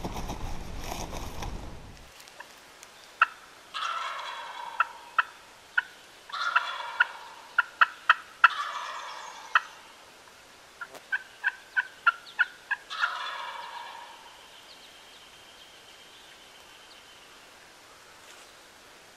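A wild turkey gobbler gobbling four times, each a rattling call about a second long, mixed with a run of sharp, short turkey clucks and yelps. The clucks and yelps include a quick evenly spaced series of about six notes near the end. A steady noise fills the first two seconds and stops abruptly.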